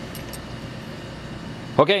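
Faint light metal clicks as a small metal drawer pull is handled and lifted from a bench vise, over a steady low hum; a man says "okay" near the end.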